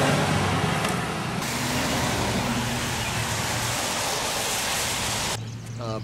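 Steady rushing noise with a steady low hum beneath it, like a vehicle running nearby, its upper hiss thinning about a second and a half in. It stops abruptly near the end, where a man's voice begins.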